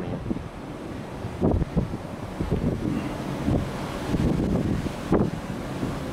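Wind blowing across the microphone: a low, uneven rumble that rises and falls in gusts, with a couple of stronger buffets.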